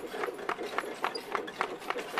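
Hooves clip-clopping at an even pace, about three to four beats a second, as a sound effect for ox carts on the move.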